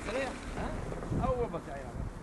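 Faint, brief speech from a voice some distance from the microphone, over steady wind noise on the microphone.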